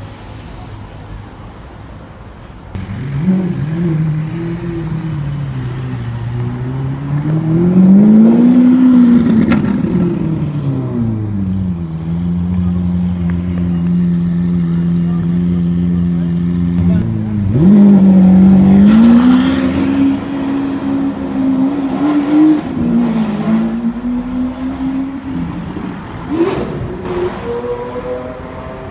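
Lamborghini Aventador SV V12 engine, coming in suddenly about three seconds in, then rising and falling in revs with a steady stretch and a sharp blip as the car moves off at low speed.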